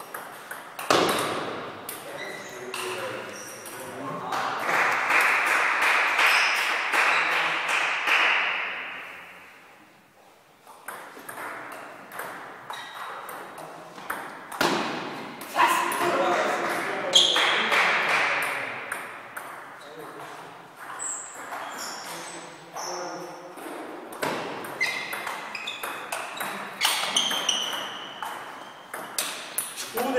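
Table tennis rallies: the ball clicking off the bats and pinging on the table in a hollow-sounding sports hall, in quick strings of sharp ticks with short pauses between points. Two longer, louder stretches of voices or noise in the hall come in between.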